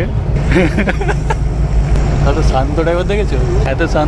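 Steady low rumble of a Tata bus's diesel engine and road noise, heard from inside the driver's cab while driving, with people talking over it.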